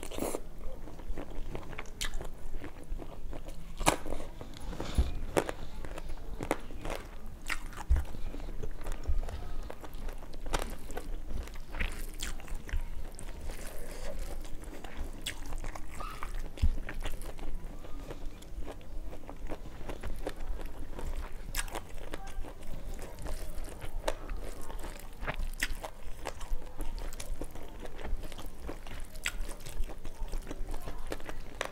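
A person chewing and biting rice and prawn curry close to a clip-on microphone, with many short wet mouth clicks throughout.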